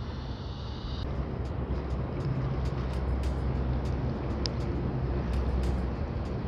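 Steady low hum of a small boat's engine running as the boat moves along the river, with faint scattered clicks over it.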